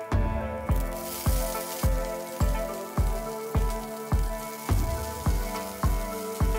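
Background music with a steady beat of about two a second. About a second in, there is a short burst of sizzling as torn lettuce goes into hot oil and fried garlic in a wok, fading to a fainter sizzle.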